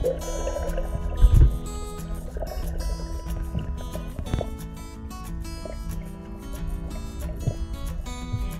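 Background music with steady held notes, and a short low rumble about a second in.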